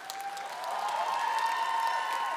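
Studio audience applauding, with some cheering voices in the crowd; the clapping swells in the first half second and then holds steady.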